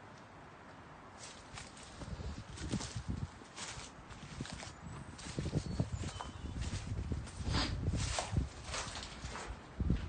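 Footsteps of a person walking on an earth and grass path, irregular soft thuds about one or two a second, starting about a second in.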